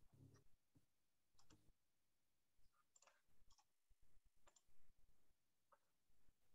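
Near silence with about half a dozen faint, short clicks scattered through it.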